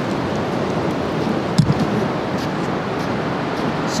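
Steady rushing wash of small waves breaking and running up the sand at the waterline, with a single brief knock about one and a half seconds in.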